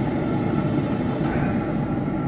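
Traeger pellet grill running at temperature with its lid open: a steady fan whine over a low rumble.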